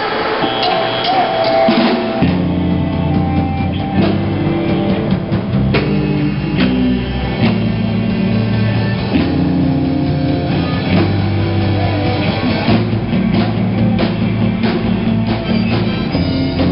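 Live rock band playing, with electric guitars through amplifiers and a drum kit. A few guitar notes open the song, then the full band with bass and drums comes in about two seconds in and plays steadily.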